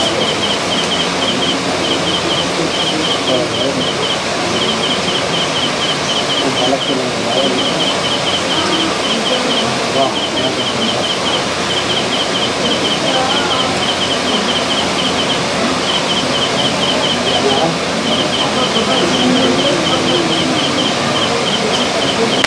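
Steady background murmur of people's voices, with a high, thin chirping trill that pulses rapidly in short runs repeating about once a second.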